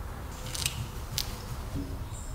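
A short hiss from an aerosol spray can squirting through its straw, followed by two sharp clicks.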